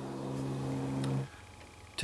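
A man's drawn-out "uhhh" hesitation held at one flat pitch, cut off about a second in, followed by faint background until he speaks again.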